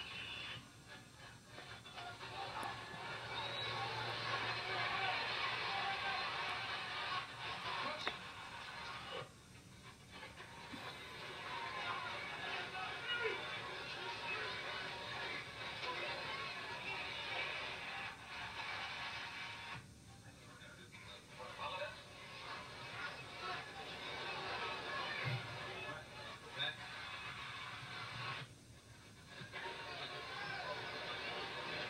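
Football game footage playing through a television's speaker: music with voices, dropping briefly three times.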